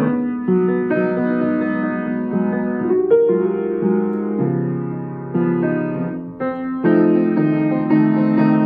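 Baldwin Hamilton H396 baby grand piano, a studio-size grand about four foot nine long, played in slow, sustained chords, with a louder chord struck near the end.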